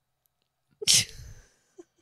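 A person's single sudden burst of breath, a sharp snort-like exhale, about a second in, trailing off into a short breathy tail.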